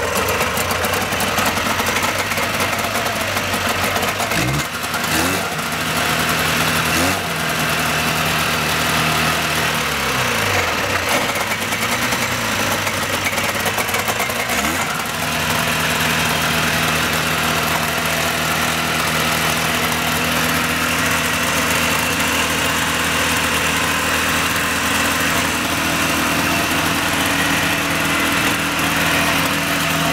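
1977 Ski-Doo Olympique 340's Rotax two-stroke twin running just after a first start in years. Its revs rise and fall several times in the first fifteen seconds, then it settles to a steady idle.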